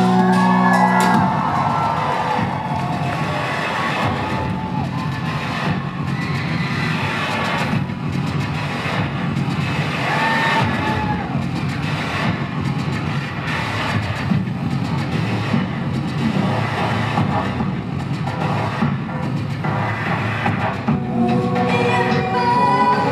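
Live electronic music played loud through a concert hall PA: a dense instrumental passage of sustained low bass tones under a crackling, noisy beat texture, the singing largely paused.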